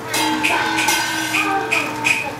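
Live Taiwanese opera music: a sustained melody line with held, gliding notes over a steady percussion beat ticking about two to three times a second.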